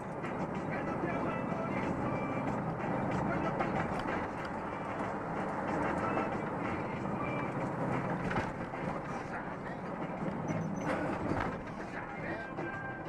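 Steady road and engine noise inside the cab of a truck driving at highway speed, with a voice over it.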